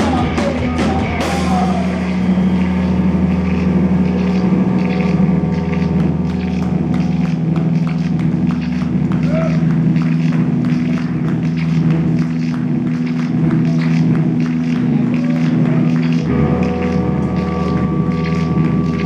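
Electric guitar and drum kit playing live rock: a sustained, droning guitar chord over steady, rapid drum strokes. The guitar moves to a new chord near the end.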